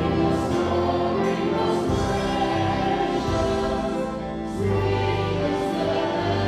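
Congregation and worship team singing a hymn together, accompanied by piano and a band with drums and guitars.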